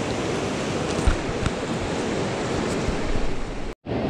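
Rushing whitewater of a rocky mountain river, a steady, loud roar. The sound cuts out for a moment near the end.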